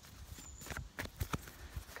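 Handling noise: a few soft, irregular taps and knocks as hands move against the camera and pick up a deck of tarot cards, most of them in the second half.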